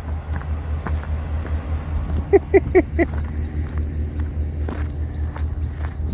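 Pickup truck engine idling, a steady low rumble with an even pulse.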